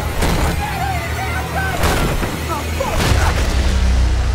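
Horror-trailer sound design: a deep, steady rumbling drone punctuated by three sharp impact hits, under wavering, wailing voices.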